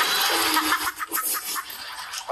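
Studio audience laughing and applauding, a dense clatter of many hands and voices that dies down after about a second.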